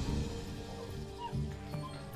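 A dog whimpering softly, two short high whines, over sustained background music.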